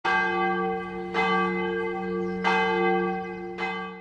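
A church bell struck four times, about a second apart, each stroke left ringing into the next.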